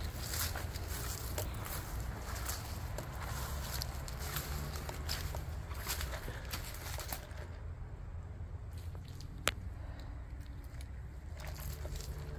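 Footsteps crunching and rustling through dry weeds and brush, over a low steady rumble. The steps grow quieter after about seven seconds, and a single sharp click comes near the end.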